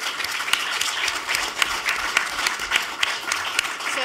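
Audience applauding, many hands clapping at once in a steady, dense spread of claps.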